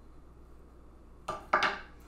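A short double clatter of a kitchen knife against a wooden cutting board, about a second and a half in, after a quiet stretch of hand-cutting peaches.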